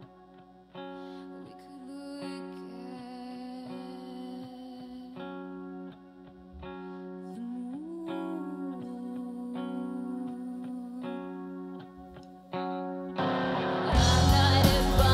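Live rock band: an electric guitar picks single ringing notes and chords over a held low note, with one note bent upward about halfway through. Near the end, the full band with drums comes in much louder.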